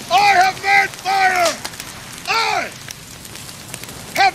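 A man's loud, high-pitched triumphant shouts, four in about the first three seconds, each dropping in pitch at its end. Beneath them is a steady crackling hiss from the open fire.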